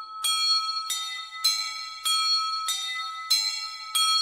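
A bell struck over and over at an even pace, a little more than one and a half strikes a second, each strike ringing on into the next. It is the bell passage of the recorded dance music.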